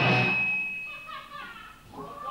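A live punk rock band's final chord cuts off, leaving one high ringing tone that hangs for about a second before it stops. The sound then falls to a few faint voices from the crowd.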